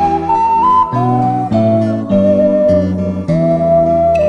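Melody played on an AG ceramic triple ocarina in a clear, pure tone, climbing in steps to a high note about a second in and then falling back down step by step, over a chordal accompaniment with bass.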